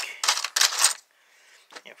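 Handful of small computer chips clattering and clinking together in a plastic tote as they are handled, a rapid jumble of sharp clicks through most of the first second, then a few scattered clicks.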